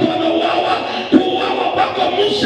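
A man's voice calling out in a chant through a microphone over music, with sharp shouted accents about a second in and near the end.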